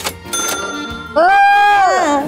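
A bright bell ding sound effect, followed a little after a second in by a loud, high-pitched held vocal note that slides up at its start and falls away at its end.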